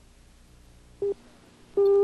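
Electronic countdown beeps: a short beep about a second in, then a longer, louder beep of the same pitch near the end, over faint tape hiss.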